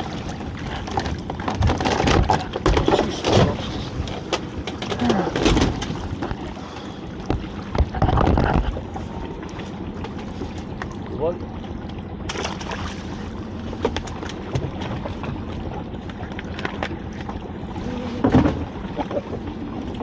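A crab and lobster pot, a steel frame wrapped in rope with netting, being hauled up over the side of a small boat: repeated knocks and clatter of the pot against the hull, most of them in the first half, with water splashing off it.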